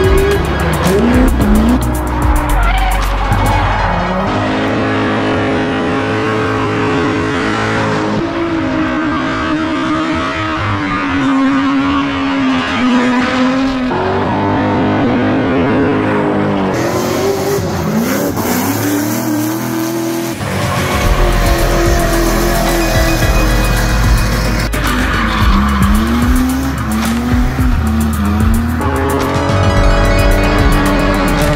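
Drift cars sliding sideways under power, engines revving up and down repeatedly while the tyres squeal and scrub, in several short clips that cut abruptly from one to the next, with music underneath.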